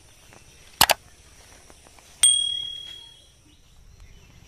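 Subscribe-button sound effect: a quick double mouse click, then about a second and a half later a bright notification-bell ding that rings out and fades over about a second.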